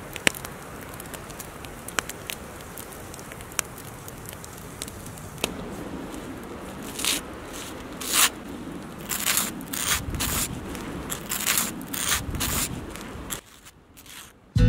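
Bread toasting in a pan: a steady hiss with occasional sharp crackles. About halfway through, a table knife spreads butter across the toast in a run of short, rasping scrapes.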